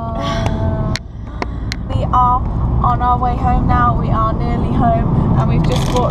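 Car cabin rumble from the engine and road, running steadily, with women's voices and laughter over it.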